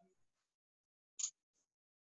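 Near silence, broken about a second in by one brief soft noise and a fainter one just after.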